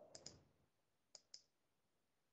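Two faint computer mouse clicks about a second apart, each a quick double tick of the button pressing and releasing.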